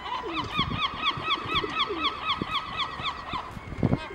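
European herring gull giving its long call: a quick, even run of short, falling notes, about five a second, for roughly three seconds before stopping.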